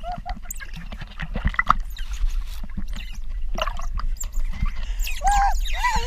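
Pool water splashing and sloshing against a camera at the waterline, with baby otters squeaking in short high calls, most of them near the end.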